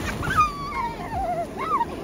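A young child's high-pitched, wavering squeal that slides down in pitch over about a second, then a shorter rising-and-falling cry near the end: a small child vocalising excitedly while playing in a wading pool.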